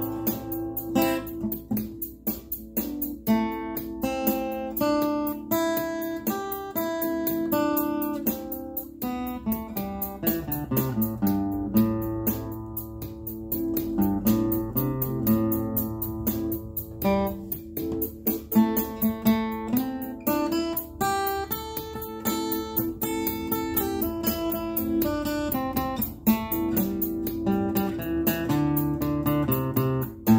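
Acoustic guitar picking single notes up and down the A minor pentatonic scale, one note after another, over a backing track in A minor with steady held chords beneath.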